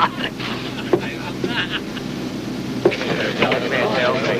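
Onlookers' voices murmuring over a steady low hum, with two sharp clicks, about a second in and near three seconds, as wooden chess pieces are set down on the board.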